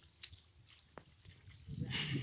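Faint open-field ambience with two brief soft clicks, and a low rumbling noise building near the end.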